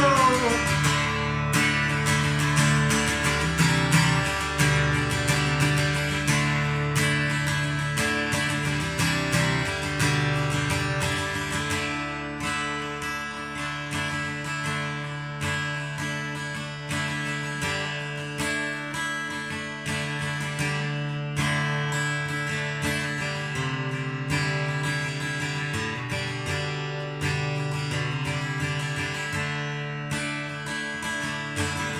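Jumbo-bodied steel-string acoustic guitar strummed in a steady rhythm of repeated chords, with no vocals, gradually getting quieter.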